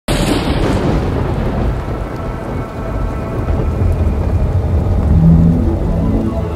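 A thunderstorm: a sharp thunder crack at the very start, fading into a long rolling rumble over steady rain. Low sustained musical notes come in about five seconds in.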